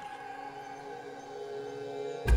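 Quiet background music: a soft sustained chord of held notes, with no beat.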